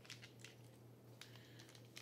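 Near silence: faint, scattered light ticks of a plastic bag of shredded cheese being shaken and handled, over a low steady hum.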